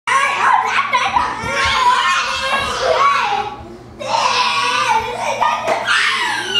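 A toddler's high-pitched babbling vocalizations, without clear words, in two long stretches with a short pause about three and a half seconds in.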